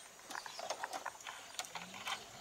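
Light, irregular clicks from the detents of a 2002 Chevrolet Trailblazer's blower-speed knob being turned, with a faint low hum rising near the end.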